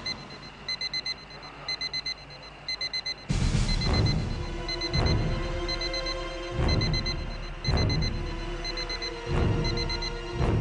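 Electronic beeping like an alarm clock, quick groups of about four high beeps repeating roughly once a second. After about three seconds, tense background music with deep booming hits comes in under the beeping.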